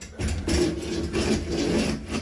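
Trolley rolling along an overhead steel strut channel as the hanging bar is pushed by hand: a continuous rolling scrape of metal on metal, starting just after the beginning and lasting nearly two seconds.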